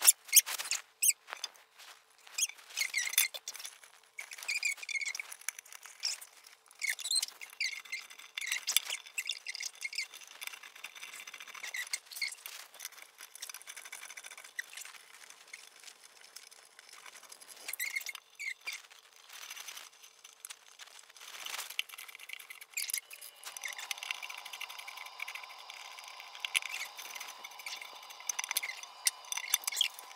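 Fast-forwarded sound of plastic toilet-seat and bidet parts being handled and fitted: a quick, irregular run of clicks and high-pitched squeaks. A steady hum comes in about two-thirds of the way through.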